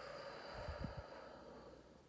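A woman's slow breath out through the mouth, a soft hiss that fades away over about two seconds, with a brief low puff on the microphone about halfway through.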